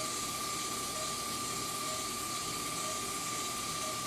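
A steady high tone held over an even hiss from operating-room equipment while an Aquablation waterjet treatment runs, with faint short beeps about once a second.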